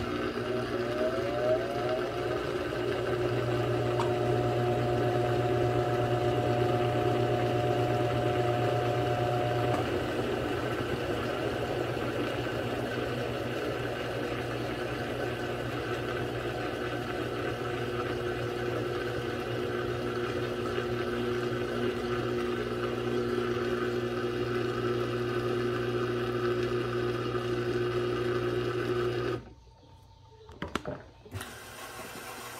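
Electrolux Turbo Economia 6 kg (LTD06) top-loading washing machine spinning its basket: a steady motor hum with a rising whine as it speeds up in the first couple of seconds. The hum cuts off suddenly near the end as the spin stops.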